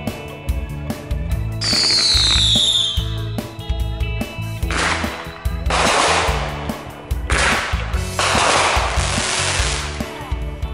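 Background music with a beat, with fireworks sounds over it: a high whistle falling in pitch about two seconds in, then bursts of crackling from about five seconds on.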